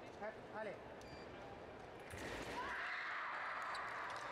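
Fencers' shoes squeaking briefly on the piste a few times as they step, followed about halfway through by a louder steady wash of voices in the hall.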